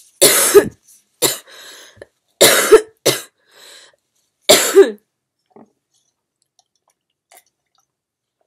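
A woman coughing: three hard coughs about two seconds apart, the first two each followed by a smaller cough, all within the first five seconds.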